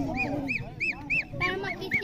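A bird calling in a rapid series of short, high notes, each rising and falling, about three to four a second, with voices underneath.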